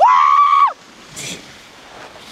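A boy's single long, high-pitched yell lasting under a second. It rises in pitch at the start, holds, then drops off.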